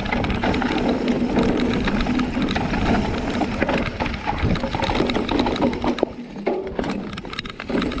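Mountain bike riding fast down a rough dirt and rock trail: tyres crunching over gravel with a steady stream of rattles and clacks from the chain and frame. It eases off for a moment about six seconds in.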